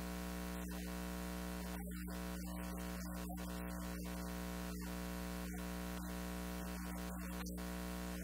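Steady electrical buzz: a mains hum with a dense stack of even overtones, unchanging in pitch and level throughout.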